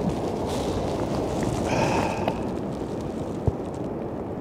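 Strong wind rumbling on the microphone over the surf of the ocean. A brief faint pitched sound comes about two seconds in, and a short low thump near the end.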